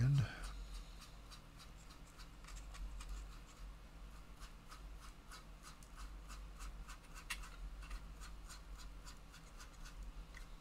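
Small paintbrush scrubbing and dabbing weathering pigment onto the plastic lower hull and road wheels of a 1:35 scale tank model: faint, irregular scratchy strokes, several a second.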